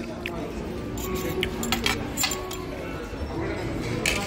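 Cutlery and crockery clinking several times, mostly in the first half, over a murmur of diners' voices.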